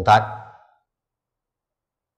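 Only speech: a man's voice ends a word about half a second in, trailing off breathily, then complete silence.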